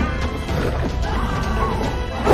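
Film action-scene soundtrack: dramatic score under a continuous layer of crashing and smashing effects, with a heavy low rumble throughout.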